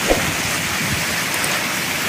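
Heavy rain pouring down and splashing onto pooling water on a yard, a steady dense hiss. A brief thump comes just after the start.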